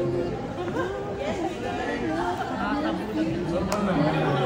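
Indistinct chatter: several voices talking over each other, with one short click near the end.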